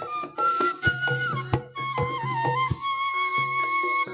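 Traditional Javanese folk music: a flute melody holding long notes and stepping between pitches, over struck drum beats.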